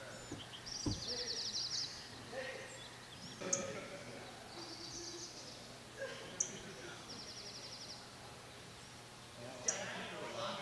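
Wild birds singing: a high, rapid trill about a second long, twice, among assorted chirps and a few sharp chip notes.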